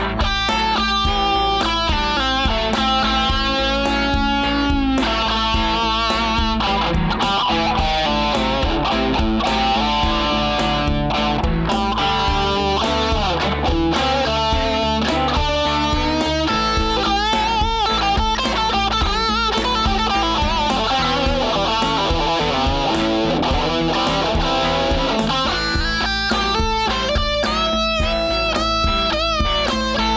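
Electric guitar lead solo improvised in the A minor pentatonic over a looped chord backing, with many string bends and vibrato.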